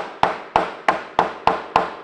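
Hammer striking pressure-treated lumber: about eight sharp, evenly paced blows, roughly four a second, knocking a crossed board joint into place.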